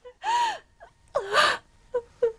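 A woman's spat-out 'pah!' of contempt, then a second short, gasping cry. Two brief outbursts with silence between them.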